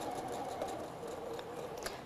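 Sewing machine running, stitching a seam through pieced quilt fabric at a steady speed, then easing off and going quieter about a second in.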